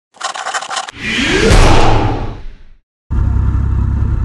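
Intro sound effects: a short stuttering burst, then a loud noisy whoosh that swells and dies away, then a moment of silence. About three seconds in, a steady low rumble of motorcycle engine and wind noise from a helmet camera starts.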